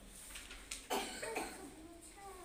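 A person coughing briefly about a second in, after a couple of faint clicks.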